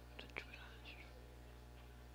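Near silence: room tone with a steady low electrical hum, a couple of soft clicks near the start and faint whispering.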